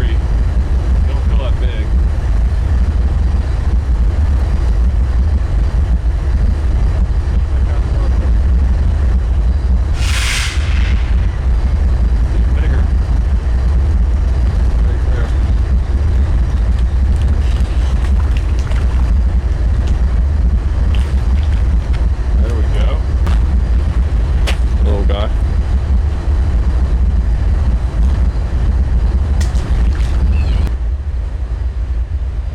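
Wind buffeting the microphone in a steady low rumble over the wash of a flowing river, with a brief hiss about ten seconds in.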